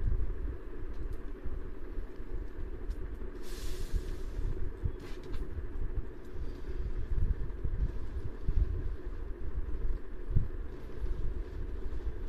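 Low, uneven rumble over a steady hum, with a few faint clicks and a short hiss about three and a half seconds in.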